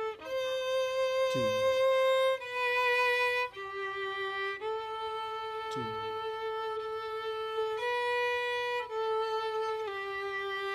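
Solo violin bowing a slow melody in long held notes, about seven of them, the longest held for around three seconds in the middle. A man counts aloud over the playing.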